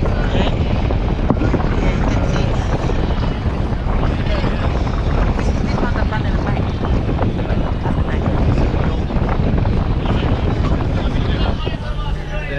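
Wind buffeting the microphone as a steady low rumble, with the chatter of a crowd of people mixed in underneath.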